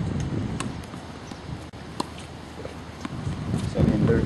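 Tennis ball being hit and bouncing on a hard court: a few sharp knocks about a second apart, the loudest about two seconds in. Wind rumbles on the microphone underneath.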